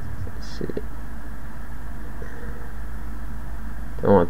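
A steady low hum over faint background hiss in a pause between narration. There are a couple of faint short sounds under a second in.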